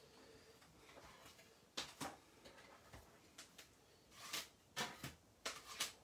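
A plastic 3D embossing folder with card inside and clear acrylic plates being handled and laid together on a table. There are a few light clicks and taps, one about two seconds in and several between four and six seconds.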